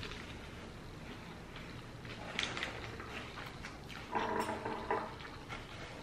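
A person chewing a mouthful of crunchy fried-chicken sandwich, with faint crunching about two seconds in. A little after four seconds comes a short closed-mouth hum of enjoyment, 'mm'.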